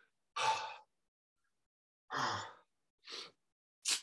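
A man breathing heavily, out of breath just after a weights workout: two long sighing exhales, then two short, sharp breaths near the end.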